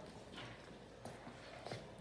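Faint, scattered clicks of a dog's claws on a concrete floor as it walks, a few light taps.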